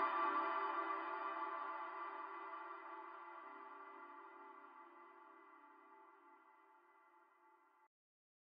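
Native Instruments Mikro Prism software synthesizer playing its 'Far Away Bells' preset: a held, airy bell-like tone of many steady pitches, fading away slowly and gone about six and a half seconds in.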